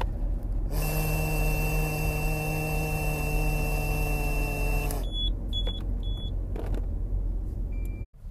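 A Smart Start ignition interlock breath tester during a rolling retest: a man blows and hums steadily into the handset for about four seconds while the unit sounds a steady high tone, then the unit gives three short beeps and one more brief beep near the end. The car's low road rumble runs underneath.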